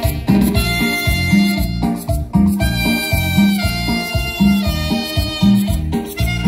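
A live band with trumpets, trombone and keyboard playing an upbeat Latin dance tune: held brass notes over a steady bass beat.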